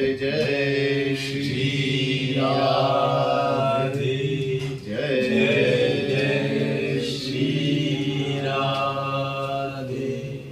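Voices chanting together on long, held "oh" vowels, each note sustained for several seconds with a brief break for breath about halfway through.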